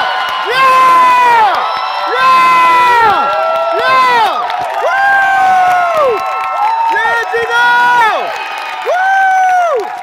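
Arena crowd cheering, with several nearby voices yelling long drawn-out shouts one after another over the general roar.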